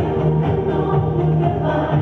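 Live amplified music: a woman sings into a microphone over electronic keyboard accompaniment.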